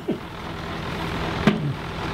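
An engine running steadily, a low even hum with noise above it. A brief louder sound breaks in about one and a half seconds in.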